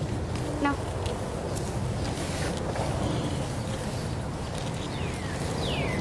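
Steady low rumble of open-air background noise. A few short, falling bird chirps come near the end.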